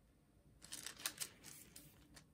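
Water brush strokes on paper, wetting watercolour pencil: a quick run of scratchy strokes starting about half a second in and lasting about a second and a half.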